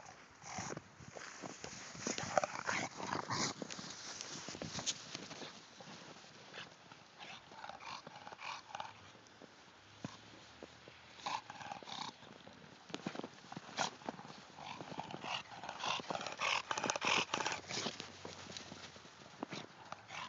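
An English bulldog playing with a bowling ball in snow: irregular crunches and scuffs as it noses the ball along, with noises from the dog itself, thickest in the last few seconds.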